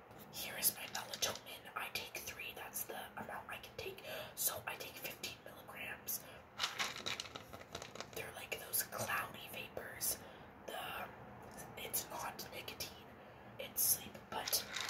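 A woman whispering in short breathy phrases, with light clicks and handling noises from plastic pill bottles.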